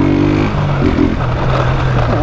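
Motorcycle engine running steadily while riding at speed, with the rough rumble of the tyres over cobblestone paving.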